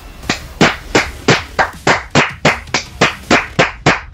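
Steady rhythmic clapping, about three sharp claps a second, coming a little quicker near the end.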